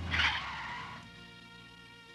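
A car's tyres screech briefly as it brakes, with a low rumble underneath, fading out within about a second. Soft sustained music follows.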